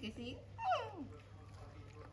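A baby macaque whimpering: one short cry, a little past half a second in, that falls steeply in pitch, with a fainter short squeak just before it.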